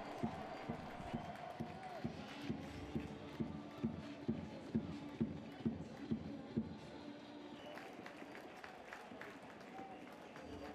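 Faint stadium crowd noise with a drum beating steadily about twice a second, stopping about seven seconds in.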